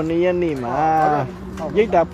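A person's voice drawing out one long vowel-like sound for about a second, its pitch sliding down, followed by short bits of speech.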